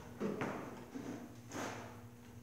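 A few soft knocks and a slide as a circular saw, not running, is handled and set down on a sheet of plywood, over a faint steady hum.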